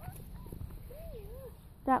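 A standard poodle puppy's faint, wavering whimper about halfway through, over a low steady rumble.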